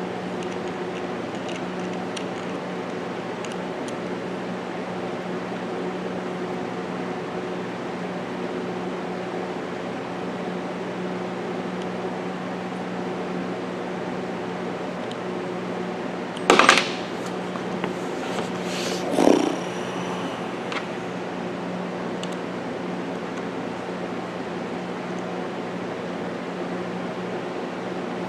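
Steady hum of a fan or air-conditioning unit, an unbroken drone with a low tone. A sharp knock comes a little past halfway through and a shorter clunk a few seconds later, as the rifle and brace are handled.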